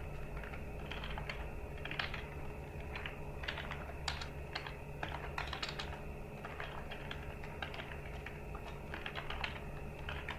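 Computer keyboard typing: quick, irregular runs of keystroke clicks with short pauses between them, over a steady low hum.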